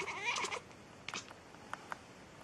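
A cat meows once, a short call of about half a second whose pitch rises and falls, followed by a few light clicks.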